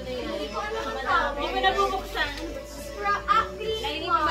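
Overlapping voices, including children's, with music playing in the background.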